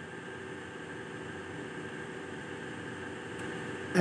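Steady background hiss with a faint hum.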